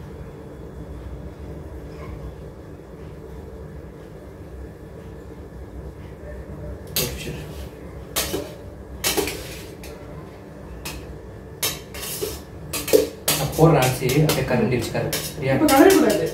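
A metal serving spoon clanking and scraping against a stainless steel pot as cooked rice is scooped out, a string of sharp clatters starting about halfway through and coming faster near the end. A steady low hum lies underneath.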